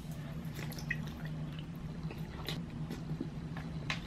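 Faint, wet squishing and small mouth clicks of someone chewing an over-large mouthful of cola-flavoured gelatin, with a low steady hum underneath.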